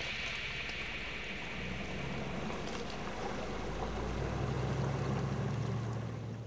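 Range Rover P38's 4.6 V8 engine running steadily as the vehicle drives through mud and water, with a rushing hiss of water and mud from the tyres. The engine grows louder about four and a half seconds in.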